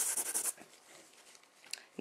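Brisk scratchy rubbing of a wipe over an etched metal nail-stamping plate as it is cleaned, stopping about half a second in. A faint tick near the end.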